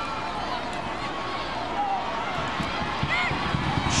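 Stadium crowd ambience: a steady murmur with a few faint distant voices and shouts from the field.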